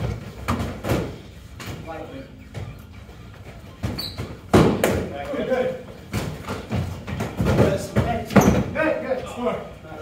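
Foam-padded swords and shields striking in an irregular flurry of thuds and slaps during close sparring, with the heaviest hits about halfway through and near the end, and scuffing footwork on a wooden floor. The hits ring out in the large hall, with brief grunts and calls between them.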